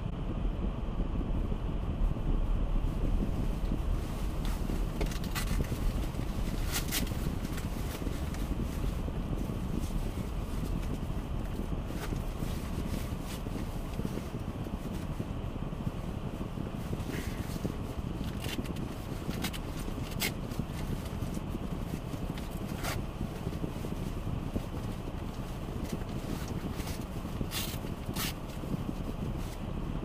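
Low steady rumble of a car heard from inside its cabin, easing a little as the car rolls to a stop and then stands with the engine idling. A dozen or so sharp light clicks come at irregular moments over it.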